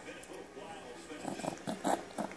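A baby making a few short whimpering vocal sounds in quick succession in the second half, the last one the loudest.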